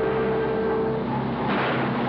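Car engine running hard with tyre and road noise as a sedan speeds through a turn. The rush of noise grows louder about a second and a half in.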